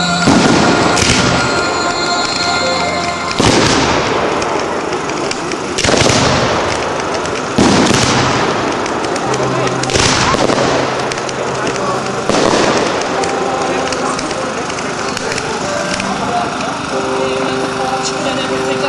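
Fireworks going off overhead: a string of about eight loud bangs, one to two and a half seconds apart, each with a short echo, the last about two-thirds of the way through.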